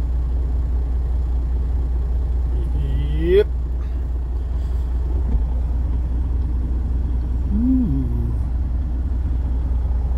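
Steady low rumble of an idling semi-truck diesel engine heard from inside the cab. About three seconds in, a short rising pitched sound ends in a sharp click, and a brief pitched sound follows near eight seconds.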